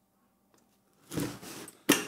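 Handling noise from a padded fabric audio sound bag as it is moved and its flap opened: a brief rustle about a second in, ending in a sharp click.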